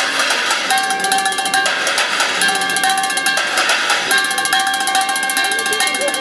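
Fast street drumming with sticks on scrap cookware: upturned metal pans, lids, a wok and a plastic bucket, struck in a dense continuous run. Steady ringing tones sound over the strikes.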